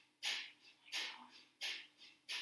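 Kapalabhati-style yoga breathing: sharp, forceful exhalations through the nose, each one driven by a quick pump of the abdominal muscles. There are three in a steady rhythm of about one and a half a second, each followed by a short, soft passive inhale.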